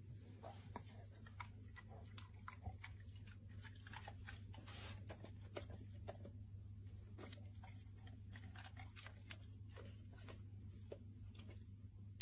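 Very faint mouthing and chewing of a golden retriever working at a banana slice with a pill in it: many small soft clicks and smacks over a steady low hum.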